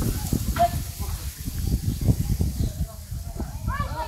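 Uneven low rumble of wind buffeting the phone's microphone outdoors, with faint voices in the background. Near the end comes a brief call that swoops up and down in pitch.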